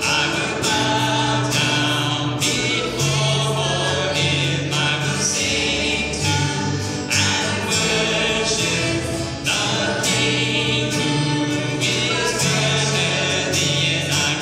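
A small worship band singing a hymn in mixed voices, accompanied by strummed acoustic guitars and an upright bass holding low sustained notes.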